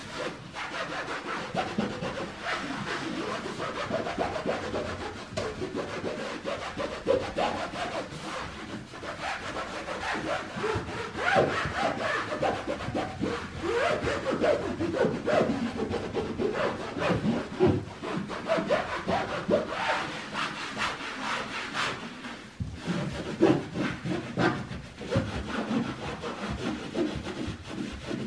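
A cloth scrubbing a wall by hand in repeated back-and-forth strokes, a steady rubbing.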